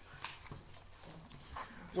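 A lull in the talk: faint background voices and room sound, with a couple of short, soft clicks or knocks.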